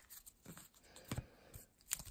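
Faint, sparse taps and rustles of baseball cards and a sealed card pack being handled, a few soft clicks, the clearest a little past one second in and just before the end.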